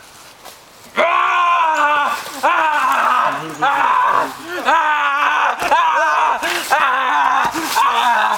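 Screaming: repeated loud wordless cries from a teenage boy's voice, starting about a second in, each cry rising and falling in pitch.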